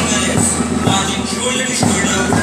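Marching band music for a parade: a steady drum beat about twice a second over held low tones.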